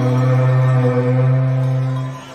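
Live arrocha band music: one long, held low note that fades out right at the end.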